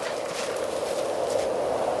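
Helicopter approaching overhead: a steady rotor whir with rushing wind that grows slightly louder.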